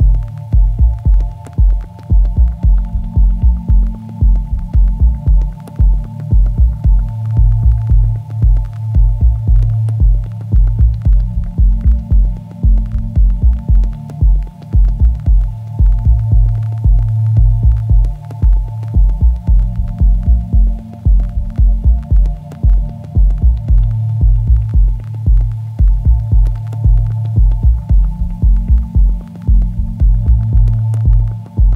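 Electronic dub music: a fast, pulsing sub-bass beat of about four pulses a second under a held bass drone and a few steady higher pad tones, with faint clicks on top.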